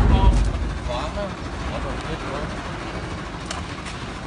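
Brief bits of speech, with a strong low rumble under the first half-second, then a steady hiss of background noise.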